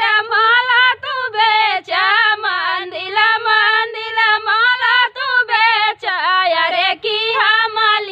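Two women singing a traditional Bhojpuri-region gaari geet (wedding insult song) together without accompaniment, their voices moving as one melodic line with short breaths between phrases.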